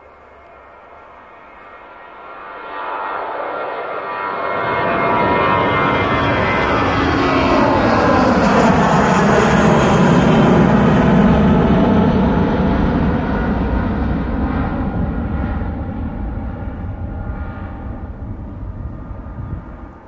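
British Airways Airbus A319 jet airliner passing low overhead. Its engine noise builds over several seconds to a loud peak about halfway through, the pitch falls as it goes past, and it fades away.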